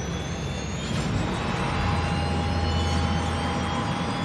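Jet airliner engines running on the ground: a steady whine over a low rumble.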